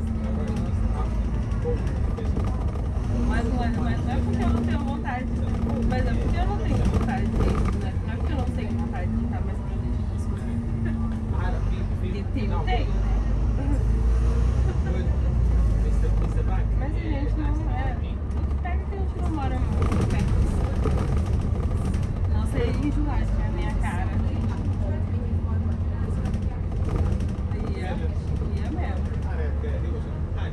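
Inside a moving double-decker bus: a steady low engine and road rumble as it drives along. Indistinct passenger chatter runs throughout.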